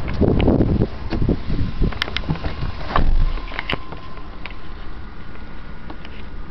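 Rustling, bumps and several sharp clicks as a person climbs into a car's driver's seat with a handheld camera, with wind buffeting the microphone in the first second.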